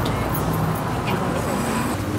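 Steady low outdoor rumble of road traffic, with a few faint scattered claps at the tail end of applause.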